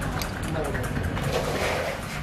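Indistinct background voices over a steady low rumble of surrounding noise.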